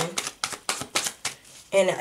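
Tarot deck being shuffled by hand: a quick run of card slaps, about six a second, that stops about a second and a half in.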